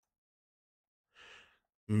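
Silence, then a short, faint breath drawn about a second in, just before a man starts speaking near the end.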